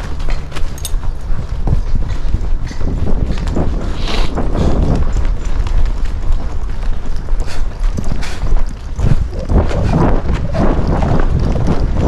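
Hoofbeats of horses moving in a soft-dirt arena, an irregular patter of muffled footfalls over a steady low rumble.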